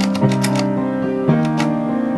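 Piano music playing sustained notes, with a run of sharp, irregularly spaced clicks over it that stop near the end.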